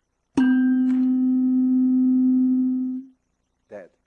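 A tuning fork, loaded with a weight to about 255 Hz, is struck once and rings a steady tone, then is cut off abruptly about three seconds in. Nothing is heard after it: the second 256 Hz fork, one hertz away, does not pick up the resonance, because its Q is so high.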